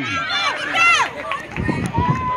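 Spectators shouting encouragement to runners in a youth 400 m race, in excited voices that swoop up and down in pitch, with a few low thumps near the end.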